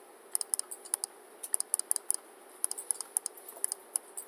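Computer keyboard typing: irregular key clicks in short clusters with brief pauses between them.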